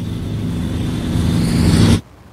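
Motorcycle engine running, growing steadily louder, then cutting off suddenly.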